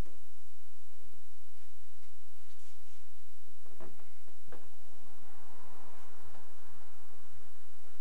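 Faint handling sounds of a hand siphon pump and its clear plastic hose being worked in a fuel tank's filler neck: a few light clicks, then a soft rushing noise for a couple of seconds past the middle, over a steady low hum.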